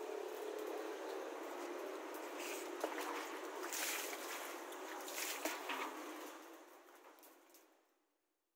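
Water splashing and trickling in a small concrete fish tank, with a few sharper splashes in the middle, fading out near the end.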